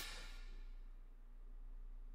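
Almost quiet: a faint, steady low hum. The tail of a sharp sound fades out in the first half second.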